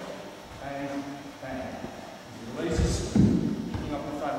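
Low, indistinct talking echoing in a large hall, then a loud, dull thump about three seconds in, as the two karateka work through a grappling technique together.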